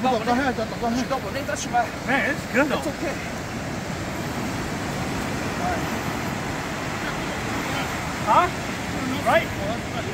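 Short bursts of people talking and calling out in the first three seconds and again twice near the end, over a steady rushing background noise.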